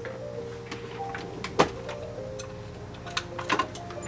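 Test music playing through a small desktop computer speaker, held notes changing pitch, with a sharp click about a second and a half in and a few lighter clicks near the end.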